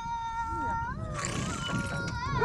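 A high voice singing long, drawn-out notes that waver slightly in pitch, gliding to a new note about a second in.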